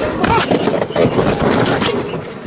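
A quick run of sharp bangs and knocks, several within two seconds, with a man shouting over them.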